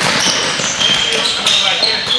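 A basketball bouncing on a hardwood gym floor during play, amid voices echoing in the hall.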